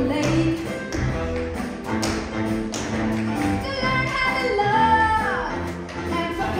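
Tap shoes' metal taps striking the stage floor in sharp clicks over a recorded backing track; a sung vocal line enters about two-thirds of the way in.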